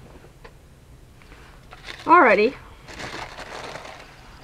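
A short spoken "uh", then about a second of paper rustling as the notebook pages are lifted and moved.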